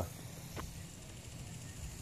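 Faint steady outdoor background noise with a low hum, and one faint click about half a second in.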